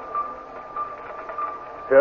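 Radio-drama sound effect of a giant computing machine running: a steady high hum with a quick run of rhythmic pulses over a faint hiss.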